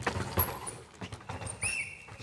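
Downhill mountain bike passing fast over a dusty, rocky track: tyres crunching on dirt and stones, with irregular clattering knocks from the bike, the sharpest about half a second in.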